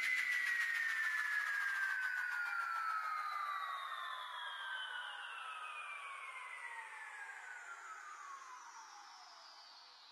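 Closing effect of an electronic music remix after the beat stops: several high synthesizer tones glide slowly downward in pitch, fading out over about ten seconds.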